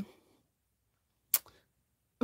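A single short, sharp click a little past halfway, followed by a faint tick; otherwise near silence.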